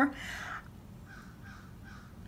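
A woman's drawn-out last word trailing off into a breathy exhale, then quiet room tone.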